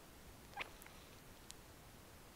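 Near silence: room tone, with a faint short squeak about half a second in and a couple of faint ticks.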